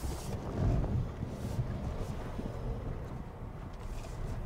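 Kia Telluride X-Pro SUV crawling over a dirt off-road trail: a steady low rumble of engine and tyres, with wind noise on the microphone.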